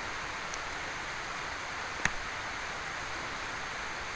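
Steady hiss of the recording's background noise, with one faint click about two seconds in.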